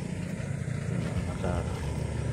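Steady low rumble of a motor vehicle's engine running, with one short spoken word about one and a half seconds in.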